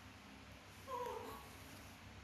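A baby macaque gives one short call, falling in pitch, about a second in.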